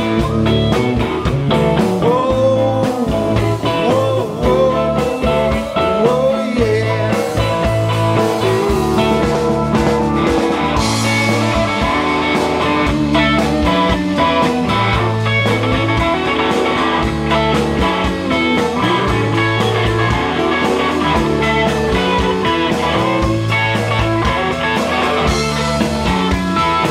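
Live rock band playing an instrumental passage of psychedelic proto-punk: electric guitars over bass guitar and drums. Wavering, bending lead lines stand out in the first few seconds, then the band settles into a steady repeating groove.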